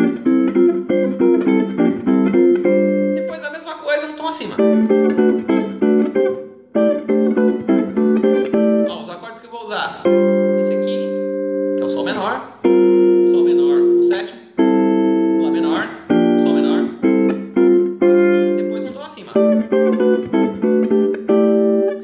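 Archtop jazz guitar played as chord melody: block chords with the melody on the top note, each chord held and left ringing, in short phrases with brief breaks between them.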